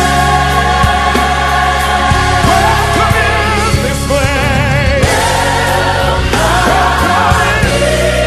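Gospel worship song: a choir singing sustained, wavering lines over a steady bass and keyboard accompaniment.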